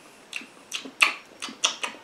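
About six short, sharp clicks at uneven spacing, soft against the surrounding speech.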